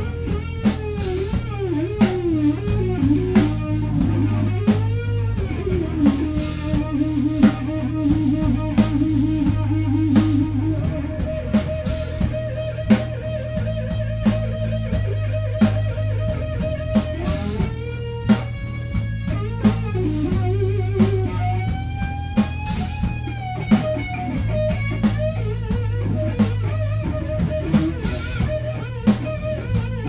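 A power trio playing an instrumental blues-rock jam: electric guitar soloing with bent and vibrato notes over bass guitar and a drum kit. The guitar plays a fast trill a few seconds in, then holds one long note for several seconds before going back to bends.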